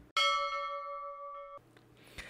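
A bell-like chime struck once, ringing with several steady high tones that fade slowly, then cutting off abruptly about a second and a half in.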